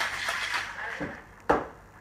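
Ice rattling in a metal cocktail shaker as the shaking winds down in the first moment, then a small click and a single sharp knock about a second and a half in as the shaker is handled on the bar.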